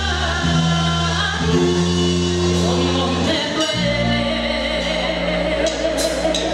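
Live Tejano band playing a song with singing over long held chords and sustained bass notes; cymbal hits come in near the end.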